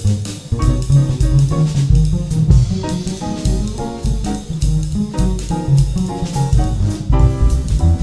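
Live jazz quartet playing: grand piano, upright double bass and drum kit, with a steady swung beat on the drums and a walking bass line underneath the piano.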